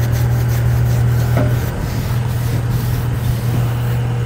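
A wide paintbrush scrubbing paint onto the rough concrete wall of a grain silo, a scratchy rubbing sound over a steady low hum.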